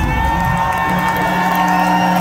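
The band's drumming stops at the song's end, leaving a held electric guitar tone ringing steadily through the amplifiers while the concert crowd cheers.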